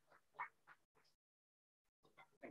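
Near silence over a Zoom feed: a few faint, choppy murmurs in the hall in the first second, then the sound cuts out to dead silence.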